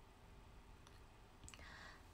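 Near silence: room tone, with a few faint small clicks in the second half and a soft hiss near the end.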